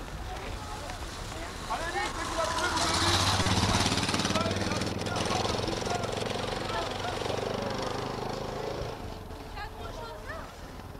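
A motor engine running steadily with a low hum and a fast pulse. It grows louder a few seconds in and dies away near the end, with voices over it.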